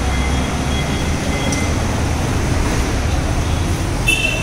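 Steady road traffic noise with a deep, even rumble.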